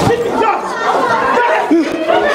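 Several people talking at once in a large lecture hall: a crowd of students chattering, with no single voice standing out.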